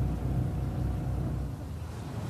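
Low, steady rumble of a vehicle engine running, which drops away about one and a half seconds in.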